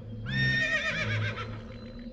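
Horse whinnying once: a high call that holds, then wavers and falls away over about a second.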